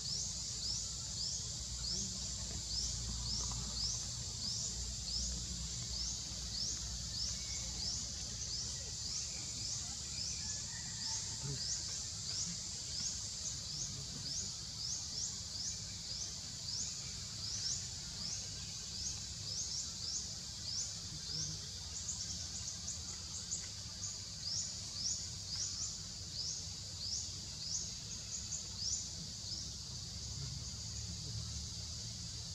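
Steady high-pitched insect chorus with short rising chirps repeating about two to three times a second, over a low rumble.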